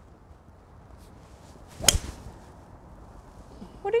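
A golf tee shot: a fairway wood striking the ball once, a single sharp crack about two seconds in.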